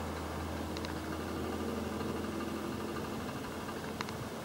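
Steady low hum and fan hiss of a running computer. A faint mouse click comes about a second in and another at the end.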